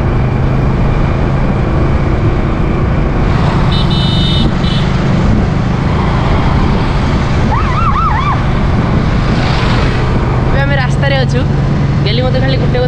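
Motorcycle ride heard from a camera mounted on the bike: a steady engine hum under loud wind and road noise. A brief high-pitched beep sounds about four seconds in, and a voice comes in near the end.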